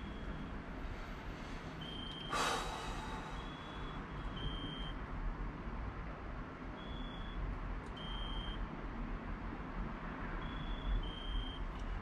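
Steady background hum and hiss with short, high, flat beeps of about half a second each, coming irregularly every second or two, often in pairs. A brief breathy rush of noise sounds about two seconds in.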